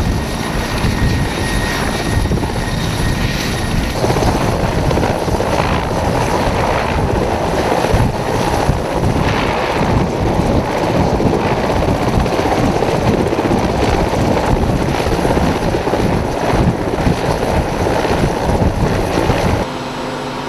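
A Mil Mi-17 helicopter running on the ground with its main and tail rotors turning: a loud, steady rotor beat over the noise of its turboshaft engines. About four seconds in the sound turns brighter, and just before the end it drops to a quieter steady hum.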